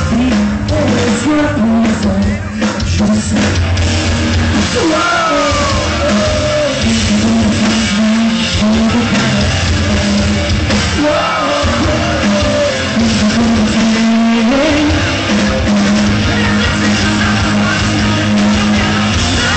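A rock band playing live through a PA, heard from the audience, with a male lead singer carrying a slow melody over guitars, bass and drums.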